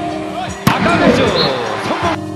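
A volleyball struck hard once, about two-thirds of a second in, followed by a swell of shouting voices from the arena crowd and commentator, over background music.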